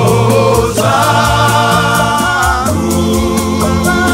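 A Shona gospel song, with a vocal group singing in harmony over sustained low accompaniment and a steady, evenly ticking beat.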